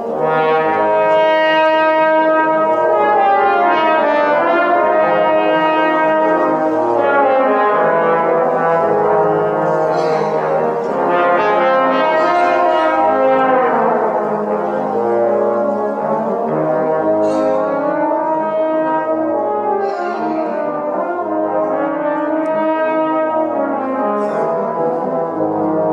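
A trombone quintet playing a jazz-idiom piece together: sustained multi-voice chords and moving lines, with a slide glide in pitch about midway.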